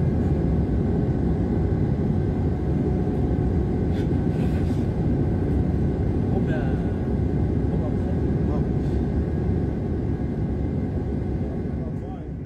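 Steady, loud cabin noise of a jet airliner in flight, heard from inside by a window: an even, deep rumble of engines and airflow.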